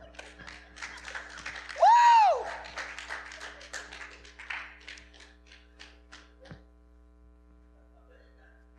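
Scattered hand clapping with a loud, single rising-and-falling whoop of a voice about two seconds in; the claps thin out and stop after about six and a half seconds.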